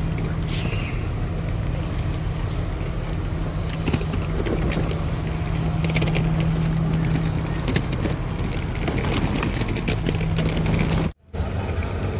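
A diesel train engine idles with a steady low hum under the faint voices of people on the station platform. The sound cuts out abruptly for a moment near the end.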